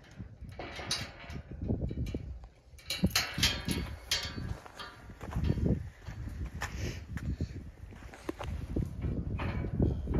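Footsteps crunching and scuffing on dry, cloddy dirt, with irregular knocks and the rustle of a hand-held camera being carried.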